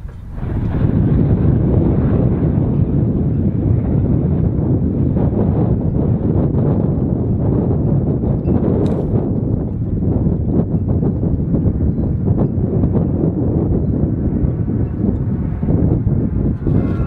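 V-22 Osprey tiltrotor aircraft flying low overhead, its rotors making a loud, steady low drone that comes in about half a second in.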